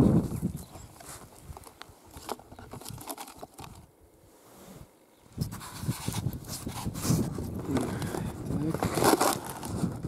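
Rustling and clicks as a handheld camera is set down. Then, from about five seconds in, uneven crunching and scraping of a snow shovel and boots in crusted snow and hay.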